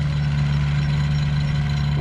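Single-cylinder diesel engine of a homemade farm truck (xe công nông) running steadily as it drives across a field under a load, a low, even drone.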